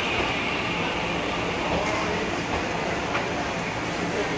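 Puyuma Express TEMU2000 tilting electric multiple unit pulling out of the station, its cars rolling past at low speed with a steady running noise and one sharp click about three seconds in.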